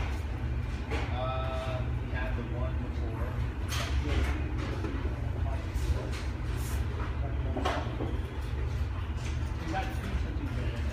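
A person's voice over a steady low rumble, with a short pitched sound about a second in.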